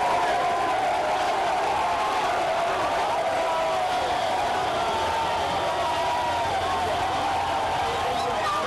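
Large crowd cheering and shouting, many voices at once at a steady level.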